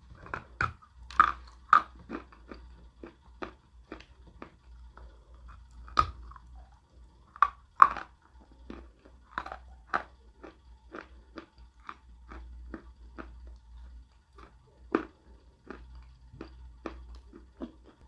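Lump of dry Uighur yellow edible clay being bitten and chewed close to the microphone: a run of sharp, irregular crunches as the crumbly clay breaks up in the mouth, loudest about six and eight seconds in.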